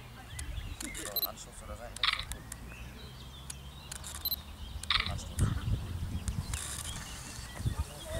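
Outdoor football pitch sound: scattered voices of children and two short shouts, about two and five seconds in, over a low rumble of wind on the microphone.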